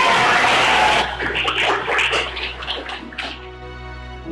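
A classroom of children cheering and clapping. A loud burst of shouts comes in the first second, then scattered claps and voices die away over the next two seconds, with soft background music underneath.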